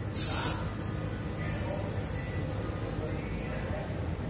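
A short burst of compressed-air hiss, about half a second, as an air chuck pushes air into a truck's rear helper airbag, then a low steady background hum.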